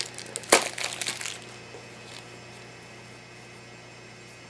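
Plastic wrapping being peeled off a small plastic toy bottle: one sharp crack about half a second in and some crinkling, then only faint room tone with a low steady hum.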